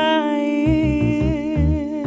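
A woman singing one long held note with vibrato, over sustained electronic keyboard chords and bass notes.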